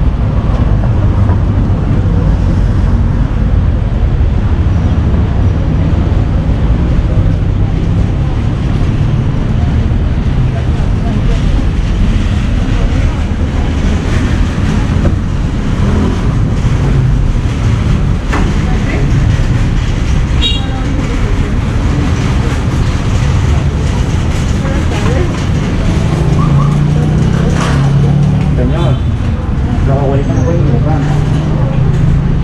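Street ambience: steady traffic noise under a heavy low rumble, with a louder low hum swelling near the end.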